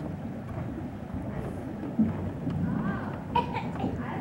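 Indistinct voices with wind noise rumbling on the microphone, and a brief higher-pitched voice about three seconds in.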